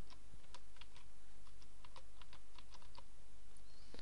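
Computer keyboard being typed on: a run of about a dozen separate keystrokes at an uneven pace.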